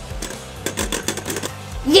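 Beyblade Burst spinning tops, Dead Phoenix and Cho-Z Valkyrie, spinning and knocking against each other in a plastic stadium, a rapid irregular run of clicks.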